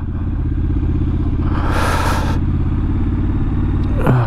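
Triumph Scrambler 1200 XE's parallel-twin engine running steadily at low revs as the bike rolls slowly, with a brief hiss about a second and a half in.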